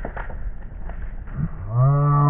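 Mountain bike rolling over loose forest floor with scattered rattles and knocks, then near the end a man lets out one long drawn-out cry, rising and then falling in pitch, a reaction to a rider crashing just ahead.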